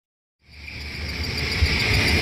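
A dark-ride's ambient soundscape: a steady, high-pitched buzzing drone over a low rumble, fading in over the first half second after silence.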